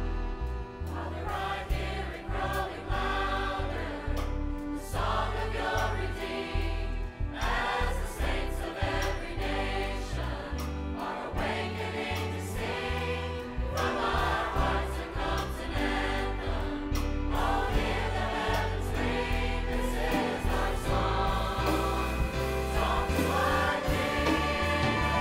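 A large mixed choir of men and women singing a gospel song in phrases, over instrumental accompaniment with a steady bass line.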